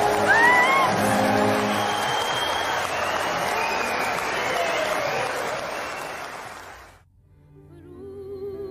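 Concert audience applauding, with a few cheers in the first second. The applause dies away about seven seconds in, and orchestral music begins just at the end.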